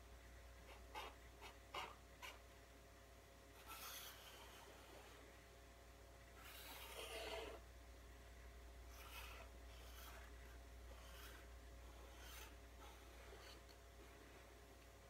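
Faint scratching of a felt-tip marker drawing strokes on paper, in short separate strokes, with a few light clicks about a second in.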